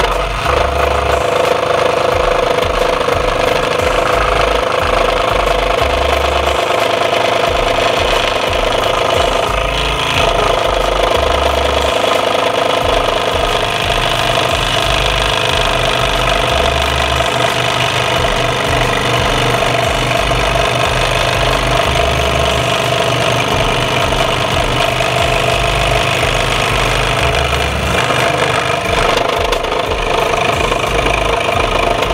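WEN scroll saw running, its reciprocating blade cutting steadily through a wooden CO2 car blank.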